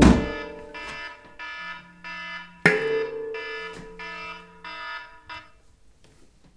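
Handpan (a Saladin scale in D) played softly: single pitched notes ring out about every half second, with one harder stroke just before 3 s, and the playing thins out toward the end.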